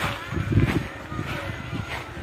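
Footsteps on a dirt path with wind rumbling on the microphone, as uneven low thuds.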